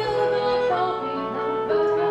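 Live music for female voice, clarinet and piano: long held notes that step to new pitches about every second.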